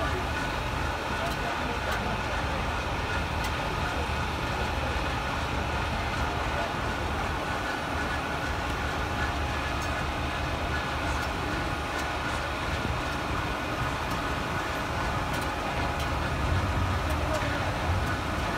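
Steady low hum of parked fire engines' diesel engines idling, with a few faint steady whining tones above it and faint voices in the background.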